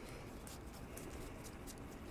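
Faint, light ticks of trading cards sliding one past another as a stack of cards is thumbed through, over quiet room tone.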